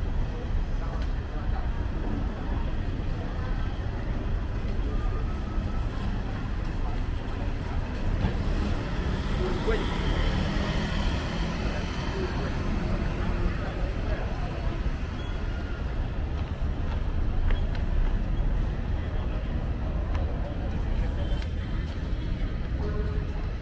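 City street ambience: a steady rumble of traffic with passers-by talking indistinctly, the voices clearest about halfway through.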